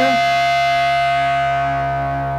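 Electric guitar and bass guitar holding one sustained chord through their amplifiers, steady and slowly fading toward the end.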